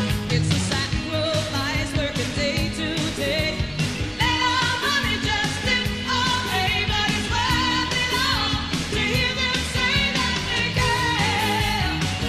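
A woman singing lead live with a full band of drums, bass, guitars and keyboards playing an up-tempo pop song. Her voice rises strongly over the band from about four seconds in.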